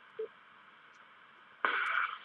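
FM amateur radio receiver between two stations' transmissions: near silence with a brief low blip just after the previous transmission ends. About 1.6 s in, a sudden steady hiss comes in as the squelch opens on the next station's carrier.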